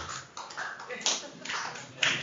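A scatter of short, irregular taps mixed with brief voices in a room.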